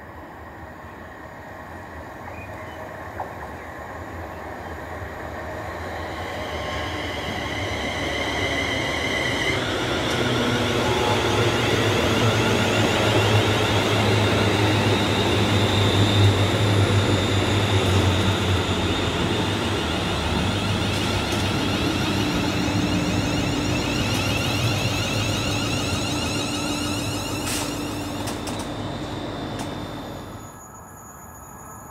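A Scotrail four-carriage electric multiple unit runs into the station: its rail rumble and a high electric whine build to a peak about halfway through, then ease away as it draws in.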